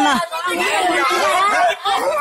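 Several people talking over one another in a heated group exchange; only voices are heard.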